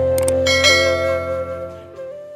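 Intro jingle music with a held flute-like note over a low drone. A quick click comes about a quarter second in, then a bell chime rings about half a second in, and the music fades out toward the end.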